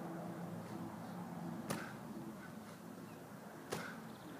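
Medicine ball landing with a sharp smack during repeated squat-and-throw reps, one hit about every two seconds: twice, about 1.7 s in and near the end.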